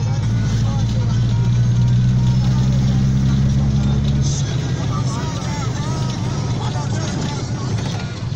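Car engine and road noise heard from inside the cabin, a steady low drone that changes and eases slightly a little over four seconds in. Voices run underneath in the second half.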